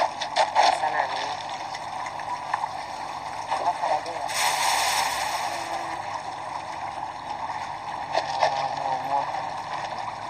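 River water flowing, with distant voices in the background and a brief louder rush of noise about four and a half seconds in.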